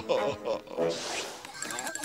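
Wordless cartoon vocal noises: a bear's pleased murmurs in the first second, a short swish about a second in, then quick, high chattering near the end.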